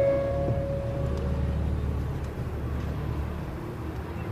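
Low, steady rumble of a car's engine and road noise heard from inside the cabin, while the last held note of music fades away in the first second.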